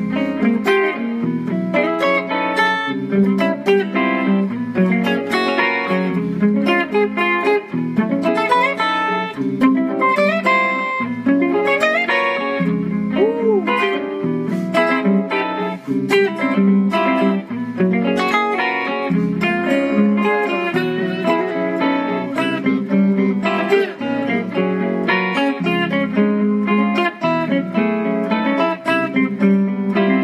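Hollow-body archtop electric guitar improvising quick single-note lines, with a few bent notes, over a backing of sustained stacked-triad chords that change about every two seconds.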